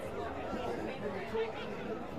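Indistinct chatter of several overlapping voices from the spectators and players around an Australian rules football contest, with no words clear.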